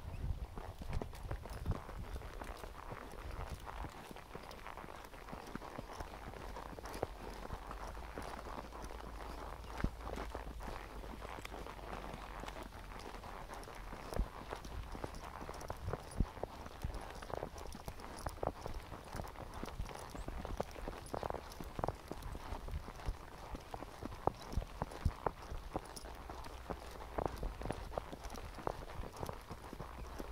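A horse's hooves walking on a dirt trail: a steady run of irregular clip-clop steps, with wind rumbling low on the microphone.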